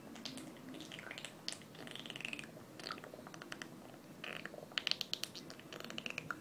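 Pool water lapping and splashing around bodies moved slowly through it, with scattered wet clicks and drips that cluster near the end.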